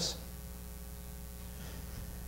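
Steady low electrical mains hum picked up by the microphone, with a faint higher tone above it and nothing else sounding.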